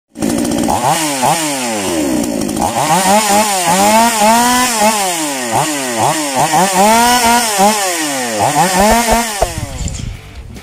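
Black Bull 58M two-stroke chainsaw engine being revved, its throttle blipped up and down about seven times in quick succession, running with the top cover off and carburettor exposed. The engine note falls away near the end.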